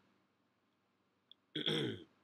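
A man's short throaty vocal sound near the end, falling in pitch, after about a second and a half of near silence with one faint click.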